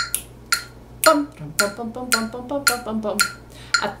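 Metronome clicking steadily at 112 beats per minute, about two clicks a second, one click per bar of the excerpt. From about a second in, short pitched notes in a quick dotted rhythm sound along with the clicks.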